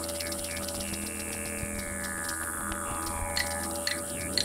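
Background music drone: several low sustained tones held steady, with a higher tone sliding slowly downward through the middle.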